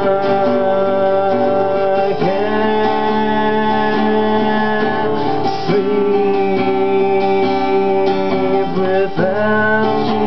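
Acoustic guitar strummed steadily, the chord changing about every three and a half seconds.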